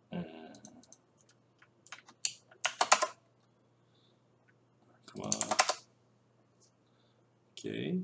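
Typing on a computer keyboard: scattered keystrokes with a quick burst about two to three seconds in, along with short murmured vocal sounds.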